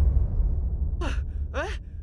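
The song's last notes fade out, leaving a low rumble. Then a voice gives two short cries, each falling steeply in pitch, about a second in and half a second later.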